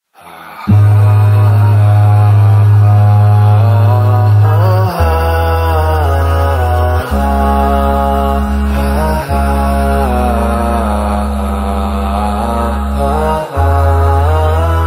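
A programme-break jingle of chant-like vocal music: a wavering sung melody over long, steady low drone notes that shift pitch every few seconds. It comes in suddenly after a brief silence at the very start.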